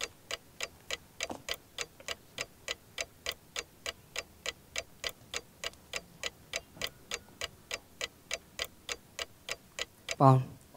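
Quiz-show countdown clock sound effect: even, sharp ticks at about four a second, marking the time the team has to answer.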